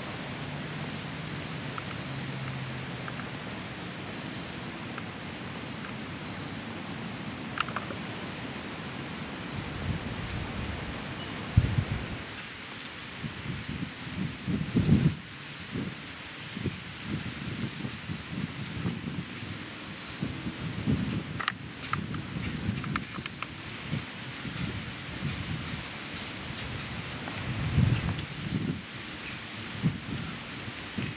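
Outdoor field ambience: a steady hiss, joined from about ten seconds in by irregular low rumbling gusts of wind buffeting the microphone.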